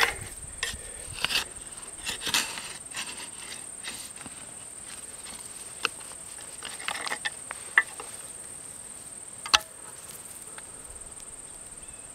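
Garden fork tines scraping and crunching through dry soil in short irregular strokes, with a few sharp clicks, over a steady high-pitched drone of insects.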